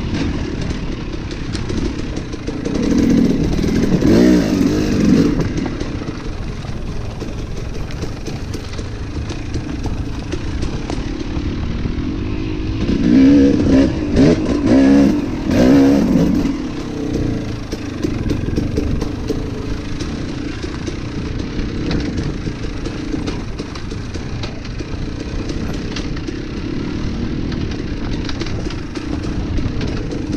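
Dirt bike engine running as the bike is ridden along a trail: a steady engine note with two louder stretches of throttle, about three to five and thirteen to sixteen seconds in, where the pitch swings up and down.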